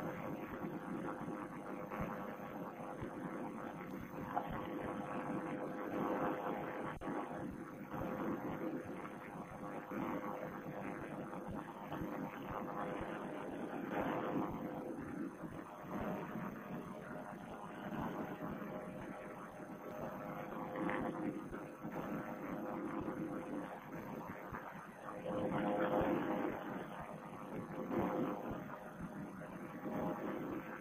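Vittorazi Moster two-stroke paramotor engine and propeller droning steadily in flight. It is heard thin and muffled through a Bluetooth headset microphone, with a few swells in level, the largest near the end.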